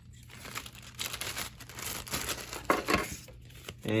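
Small clear plastic bag crinkling and rustling as it is handled, in irregular bursts, with a sharper crackle about three seconds in.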